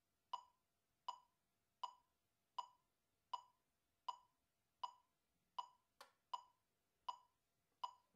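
Metronome clicking steadily at 80 beats per minute, one short, bright click about every three-quarters of a second, with one extra sharp click about six seconds in.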